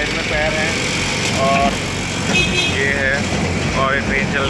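Steady running noise of a small diesel-powered miniature passenger train, heard from a seat aboard, with short bits of voices over it.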